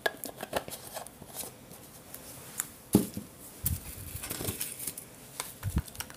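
Irregular clicks, taps and light knocks of paint bottles and painting supplies being handled and set down on a plastic-covered work table, with the loudest knock about three seconds in and a few dull thuds after it.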